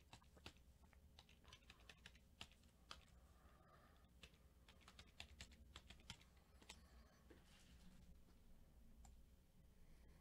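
Faint, irregular clicking of a computer keyboard being typed on, a few keystrokes standing out louder.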